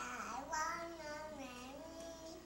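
A toddler singing in a high voice, holding long notes whose pitch wavers down and up, starting suddenly at the beginning and fading near the end.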